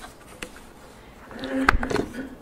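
A few sharp clicks and knocks as objects are handled on a lectern close to the microphone. They are loudest near the end, over a low buzzing hum that starts about halfway through.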